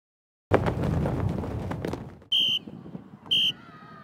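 A sudden loud burst of noise that fades over about a second and a half, followed by two short, high blasts of a referee's whistle about a second apart.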